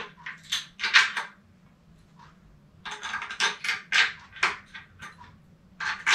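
Small steel bolts and their lock and flat washers clinking together as they are handled and pushed through a propeller hub: a few light metallic clinks in the first second, a short pause, then another run of clinks through the middle.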